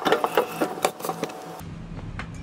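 Rapid rasping, knocking strokes of a flat implement scraped across a wet wooden sushi cutting board to clear it, stopping about one and a half seconds in.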